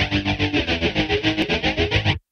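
Rock music led by a distorted electric guitar, driving along on a fast, even pulse of about eight beats a second.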